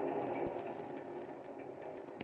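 The last of the organ music fades out, leaving a quiet steady sound effect of a moving train with a few faint clicks.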